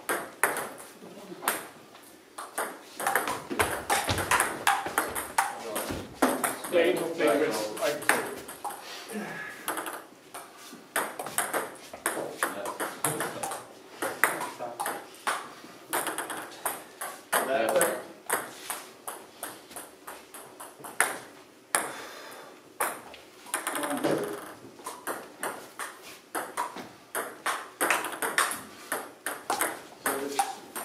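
Table tennis ball clicking off bats and the table in quick succession during rallies.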